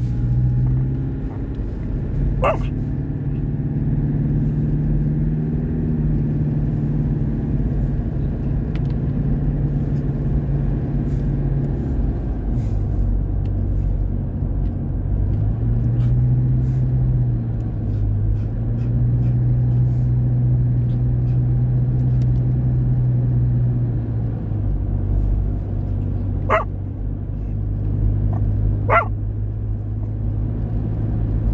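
Car interior noise while driving: a steady engine hum and road rumble heard from inside the cabin, the engine's pitch shifting up and down several times. A few short, sharp sounds cut through, one early on and two near the end.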